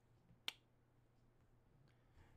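A single short, sharp click about half a second in, against near silence.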